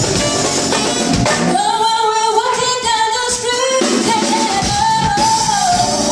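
A woman singing lead into a microphone over a live band with drums. About a second and a half in she holds long high notes while the bass and drums drop back for a couple of seconds, then the band returns under another held note.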